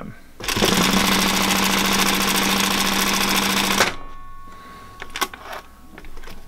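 Singer 111W101 industrial sewing machine, driven by a servo motor set to 1000 RPM, stitching through webbing at a fast, even rate. It starts about half a second in, runs for about three and a half seconds and then stops, leaving a faint hum.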